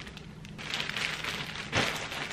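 Thin clear plastic poly bag crinkling and rustling as a packaged shirt is handled, with a louder rustle near the end.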